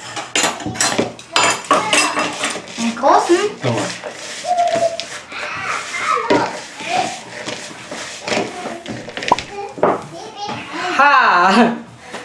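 Kitchenware clinking and knocking, a quick run of clicks in the first couple of seconds and scattered knocks after, while a young child's voice chatters and calls out in rising and falling tones.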